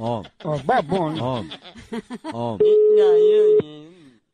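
Telephone ringback tone on an outgoing call: one steady one-second beep about two and a half seconds in, ending with a click, its five-second spacing matching the Brazilian ring pattern. A man's voice vocalizes in a sing-song way over the ringing.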